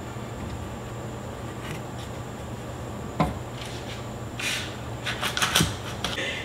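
A ceramic mug being taken out of a mug press: one sharp knock about three seconds in, then a run of quick clicks and rustles as the clamp is released and the mug lifted free, over a low steady hum.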